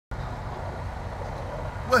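Steady low rumble of an idling truck engine, with a man's voice starting right at the end.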